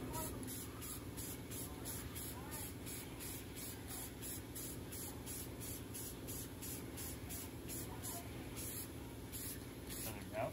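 Aerosol spray paint can hissing in quick repeated pulses, about two or three a second, as a test coat is misted onto a car interior panel. A steady low hum runs underneath.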